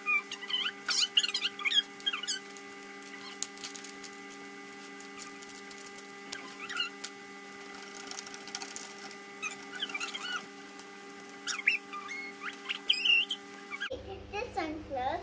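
Metal spoon stirring and scraping in a plastic cup of water, giving short squeaks and clicks in several bursts, over a steady background hum.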